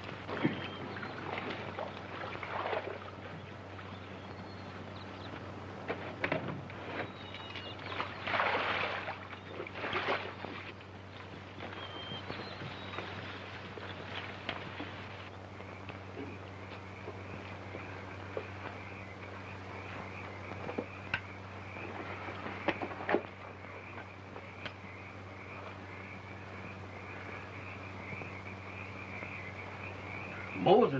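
Rustling and scraping of leaves and brush as people push through dense jungle undergrowth, in irregular bursts through the first half. From about halfway a steady, high chirping trill of a night-jungle animal sound effect runs on, over a constant low hum of an old film soundtrack.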